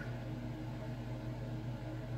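Steady low hum with a faint even hiss: room tone, with no distinct events.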